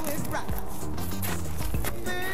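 Background music with a low line of held notes that change in steps, a voice heard briefly about a third of a second in.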